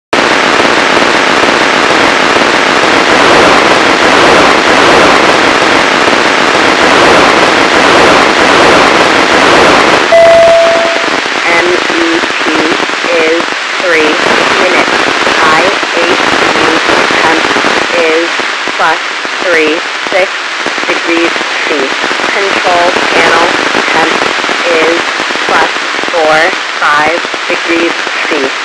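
Hiss and crackle of a weak FM satellite downlink in a radio receiver. About ten seconds in the signal comes up and quiets the hiss, a brief steady beep sounds, and then the ARISSAT-1 amateur radio satellite's voice telemetry starts, read out through the noise and announcing mission elapsed time and onboard temperature.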